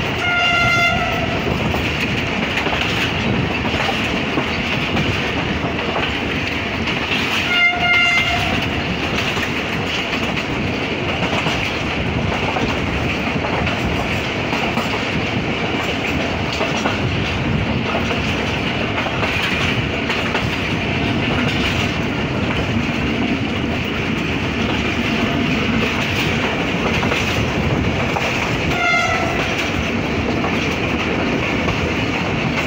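Passenger coach wheels rolling and clicking over rail joints, heard from the open coach door. The train's HGMU-30 diesel locomotive sounds three short horn blasts: one at the start, one about eight seconds in and one near the end.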